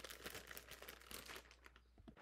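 Faint crinkling of a plastic zip-top bag stuffed with herbs and paper towel as hands press it shut, dying away near the end.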